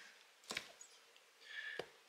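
Two faint, sharp taps a little over a second apart, with a brief soft rustle just before the second.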